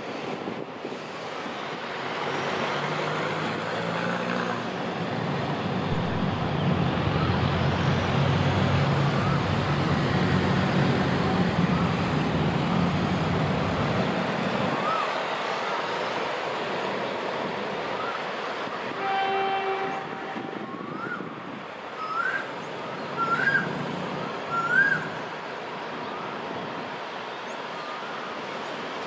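Alsthom diesel locomotive's engine rumbling as it is throttled up, loudest through the middle of the stretch before it eases back. About two-thirds of the way through, a train horn gives one short toot. Near the end come a few short, rising chirps.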